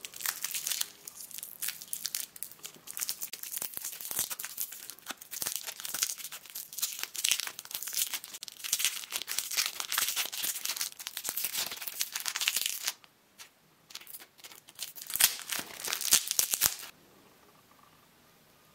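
Crinkly plastic lollipop wrapper crinkling and tearing as it is peeled off the candy, in dense crackling bursts. It pauses about thirteen seconds in, crinkles again briefly, then stops near the end.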